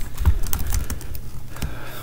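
Computer keyboard typing: a run of quick, irregular key clicks as a new search term is typed.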